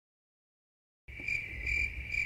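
Silence for about the first second, then a cricket chirping steadily: a high trill that pulses two or three times a second, over a low rumble. It is a crickets sound effect marking an awkward silence after a joke.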